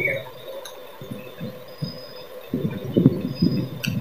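Wireless earbuds powering on in their charging case, giving two short, faint high beeps. A low, muffled voice runs in the background from about halfway, and a sharp click, likely the case, comes near the end.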